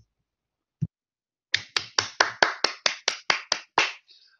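One person clapping, about eleven claps at a steady four or five a second, starting about a second and a half in. A single soft knock comes about a second in.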